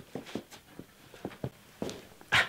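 Footsteps on a concrete workshop floor, a quick string of short steps, about four a second, as a person walks off and back.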